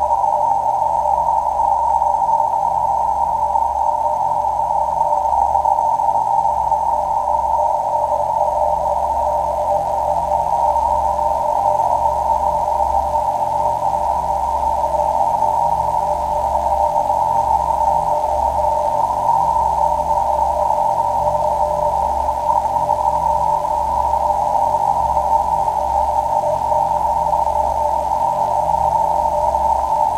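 Experimental electronic music from a live hardware-and-laptop set: a steady, dense drone of filtered noise in the middle register over a low rumble, with no beat.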